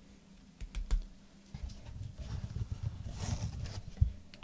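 Hands handling trading cards in hard clear plastic holders and their cardboard box: a few sharp clicks about a second in, then a longer run of light clicking and rustling.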